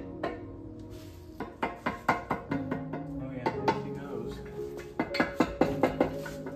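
Background music over a run of sharp metallic clinks and knocks as a BMW M52 cylinder head is set down over the block's studs and dowels. Near the end come quick mallet taps seating the head on its cut-ring head gasket.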